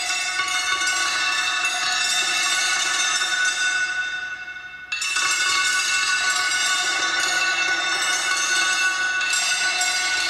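Electronic bell-like tones, a dense ringing metallic chord, set off by hand movements over an interactive sensor. The chord swells, fades a little, is struck afresh about five seconds in, and another layer joins near the end.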